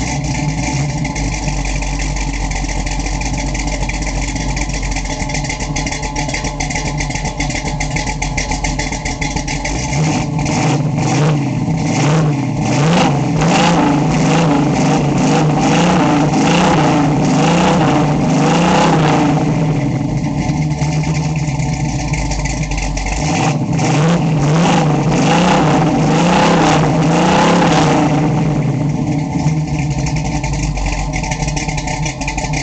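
1968 Pontiac Firebird's freshly built 400 V8, with a lopey cam and Doug's headers, heard at the exhaust from beneath the car. It idles, is revved repeatedly for several seconds about a third of the way in, drops back to idle, then is revved again for a spell before settling to idle near the end.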